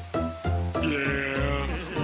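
A sheep bleats once, for about a second starting about a second in, over background music.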